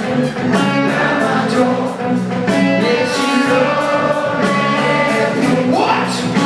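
Live rock band playing loud through the venue's PA: electric guitars, bass and drums under a lead singer's voice, with a pitch sliding upward near the end.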